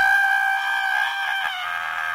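A person screaming, one long high-pitched scream held on a single note. It dips slightly in pitch about one and a half seconds in.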